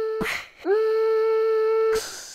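A voice humming a long steady note twice, with a short break between. Each note starts with a slight upward scoop and then holds the same pitch.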